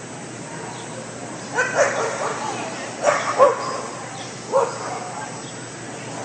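A dog barking and yipping in three short bouts, about one and a half, three and four and a half seconds in.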